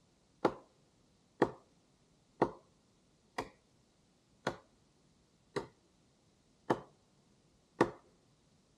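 An axe chopping into wood: sharp, evenly spaced strikes about once a second, eight in all, slowing slightly towards the end.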